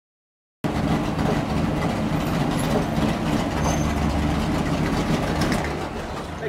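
Stock car's V8 engine idling steadily, heard from inside the cockpit. It cuts in abruptly about half a second in, after silence.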